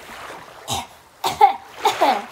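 A woman's short coughs and vocal sounds, three bursts about half a second apart, the last falling in pitch.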